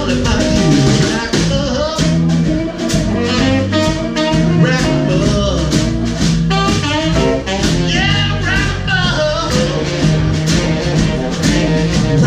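Live blues-jazz band playing: electric bass and drum kit keeping a steady beat under electric guitar and keyboard, with a wavering lead melody on top.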